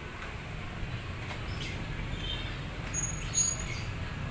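A few short, high bird chirps over a steady low background rumble; the brightest chirp comes about three seconds in.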